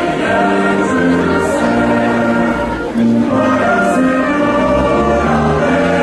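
A choir sings a hymn at the entrance procession of a Catholic Mass, in long held chords over a sustained low bass.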